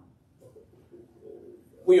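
A pause in a man's preaching filled only by faint low sounds. His speech starts again loudly near the end.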